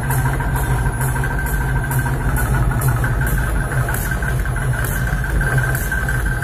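Live electronic music played loud: a steady low droning bass with a hissing, cymbal-like hit about twice a second and a thin steady high tone above it.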